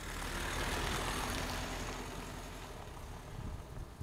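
Pickup truck driving away along a dirt track, its engine and tyres on the gravel fading as it pulls off.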